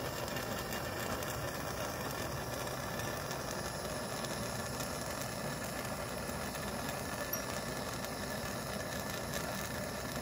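Gas torch burning steadily with an even rushing noise, its flame played into a crucible to melt gold.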